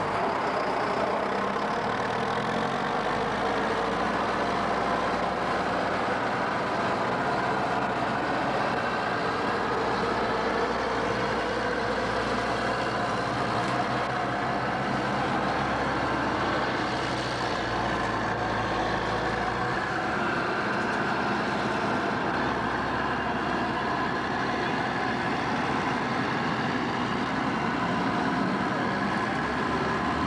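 Diesel engines of road-paving machinery, a Caterpillar motor grader among them, running steadily with a dense hum of engine tones. A deep low rumble drops away about twenty seconds in.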